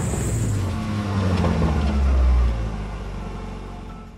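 A motor vehicle engine running with a low rumble that swells to its loudest about two seconds in, then fades away.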